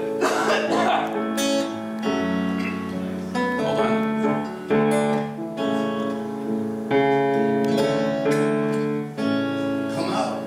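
Acoustic guitars strumming chords in the instrumental opening of a live song, the chords changing about every second with notes ringing on under them.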